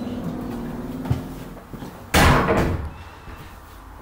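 Interior door being opened: a light click about a second in, then a louder knock about two seconds in as the door swings open.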